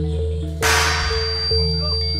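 Javanese gamelan accompaniment for a rampak gedruk dance: ringing mallet-struck metal keys over a steady, repeating deep bass pattern. A sharp crash cuts in about half a second in and fades within half a second.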